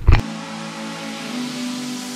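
A brief knock as the car-interior road noise cuts off, then background music begins: sustained electronic chords that shift about halfway through.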